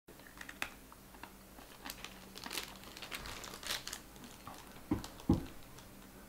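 Quiet crackling and crunching as a piece of dry edible clay (mabele) is bitten and chewed, with crinkles from its small plastic wrapper. Two dull thumps come shortly before the end.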